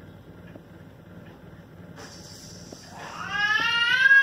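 A child's high-pitched, drawn-out call, like a meow, about three seconds in: it rises, holds, then falls away over nearly two seconds. Before it there is only faint steady room noise.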